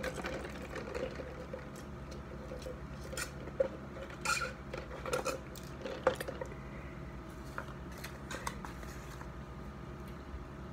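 Small handling sounds of a large paper soda cup with a straw and food packaging being moved on a table: a few sharp clicks and knocks, the loudest about 3.5 and 6 seconds in, over a steady low hum.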